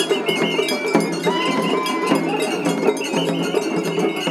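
Japanese festival hayashi played on a dashi float: a bamboo shinobue flute melody over quick taiko drum strikes and the clang of a small hand gong. Around a second in, the flute holds a steady lower note for about a second.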